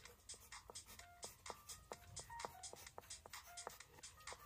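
Pencil scratching on paper in many quick short strokes while writing, over faint background music of short electronic notes.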